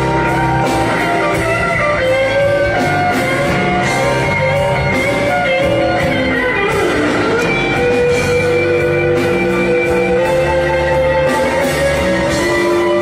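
Live electric blues band playing, led by electric guitar with long held, bent notes over bass and drums; one guitar note slides down and back up about seven seconds in.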